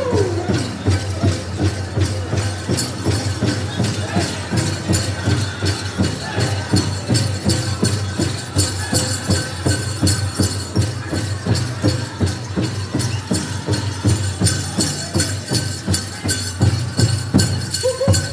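Powwow big drum beaten in a steady, fast beat of about three strikes a second, with a group of singers and a high rattling in time with the beat from dancers' bells.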